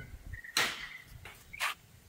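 Acorns falling from the trees overhead and hitting with sharp bangs: a loud one about half a second in and a smaller, sharper one near the end.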